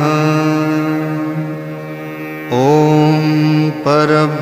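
A male voice chanting a Sanskrit name-litany mantra ('Om ... namah'): a long held note that slowly fades, then the next chanted line begins about two and a half seconds in.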